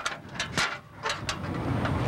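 A run of short knocks and clanks from a stepladder being climbed and beer cans being grabbed at the top, over a low rumble in the second half.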